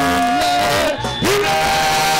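Congregational worship singing through a PA: a lead voice holds one long note, slides down about a second in, then rises into a new phrase, with the congregation singing along.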